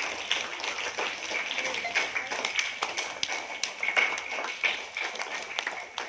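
Uneven, scattered clapping from a small group of young children, claps landing irregularly rather than in unison.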